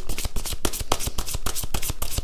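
A deck of oracle cards being shuffled by hand: a quick, even run of card edges clicking and sliding against each other, about ten a second.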